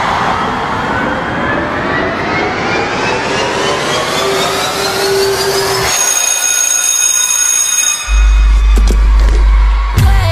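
Synthesized riser in a TV advertisement: several tones glide steadily upward together for about six seconds, give way to steady high tones, and a deep bass drone comes in about eight seconds in.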